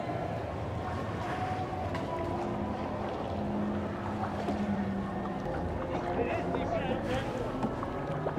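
Steady low engine rumble with a few faint held tones, running evenly throughout.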